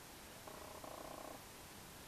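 Faint room tone with a faint, brief hum from about half a second in to about a second and a half in.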